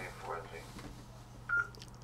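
A single short electronic beep from the Yaesu FTM-100D transceiver about one and a half seconds in, over a low steady hum, with faint muffled speech in the first half-second.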